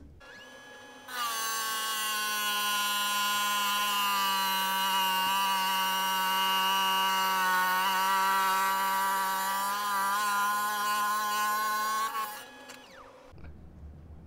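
Lapidary wet trim saw's diamond blade cutting through a Lake Superior agate. It gives a steady ringing whine with many overtones that starts suddenly about a second in and holds for about eleven seconds. It stops near the end as the blade finishes the cut, leaving a short fading tail.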